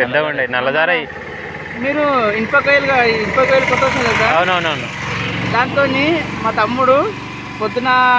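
People talking, with a steady low engine hum underneath, stronger around the middle.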